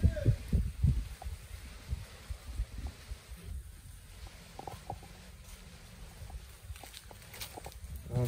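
A low rumble on the microphone, with a few short clicks and crackles in the second half. A voice speaks briefly at the start.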